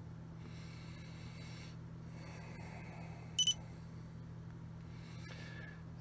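Low steady electrical hum from the bench setup, with one short high-pitched electronic beep about three and a half seconds in.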